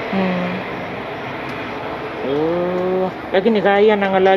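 A woman's voice: a brief sound just after the start, a drawn-out sound about halfway through, then quick speech-like utterances near the end, over steady background noise.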